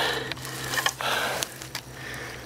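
Rustling and knocking from the camera being handled and repositioned, with a few small clicks.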